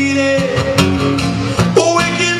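Live acoustic song: a man singing with held notes over a strummed acoustic guitar.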